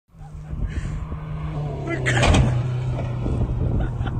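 A car's engine running with a steady low hum, voices over it, and a louder burst of sound a little over two seconds in.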